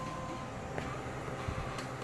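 Steady low electrical hum from the bench equipment, with a few faint clicks about a second in and near the end.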